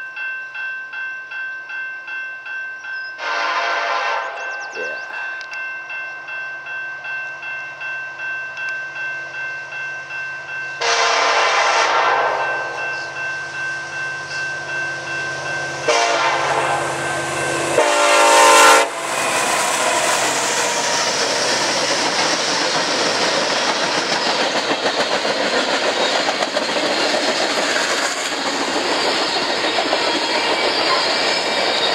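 CN SD70M-2 diesel locomotive sounding its Nathan K5LLA five-chime air horn in four blasts, the last one very loud as the locomotive comes alongside, with a bell ringing steadily underneath for the first half. From about twenty seconds in, the locomotive and its string of tank cars roll past with steady engine and wheel noise.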